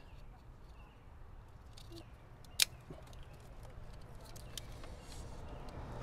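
Faint clicks and rattles of plastic wiring-harness connectors being handled, with one sharper click about two and a half seconds in, over a low steady background hum.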